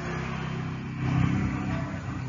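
A low mechanical rumble, like a motor vehicle engine, that grows louder about a second in.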